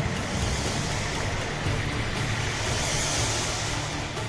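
Anime fight soundtrack: a steady rushing, wind-like noise effect over a low drone, brightening around three seconds in, with background music.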